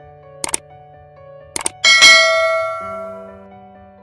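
Subscribe-button animation sound effect: two quick double mouse clicks, then a bright bell ding that rings out and fades over about a second and a half, over soft background music.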